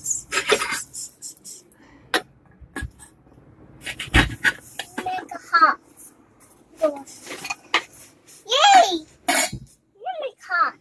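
A toddler's voice making short wordless sounds, with several knocks and clinks of a small metal toy pot and utensils, the sharpest about four seconds in.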